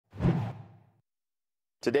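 Whoosh sound effect of a TV news logo ident, with a low thud underneath: it comes in suddenly and fades out over about a second.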